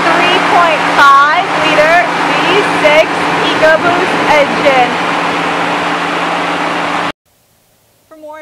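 A 2019 Ford F-150's engine idling, a steady hum under a woman's speech, which cuts off suddenly about seven seconds in.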